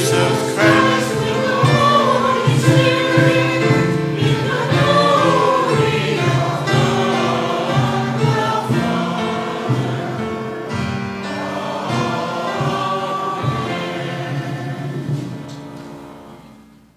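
Church congregation singing a hymn together, with long held notes; the singing fades out near the end.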